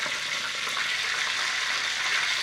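Hot oil sizzling steadily around a large breaded chicken cutlet (chicken katsu) deep-frying in a frying pan. The cutlet is cooked through and is being gripped with tongs to lift it out.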